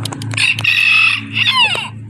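Rooster crowing once: a loud, high held note for about a second that breaks into falling notes before it ends.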